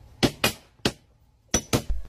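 Sharp metallic clanks of a sledgehammer striking steel railway track: three strikes in the first second, then two close together near the end.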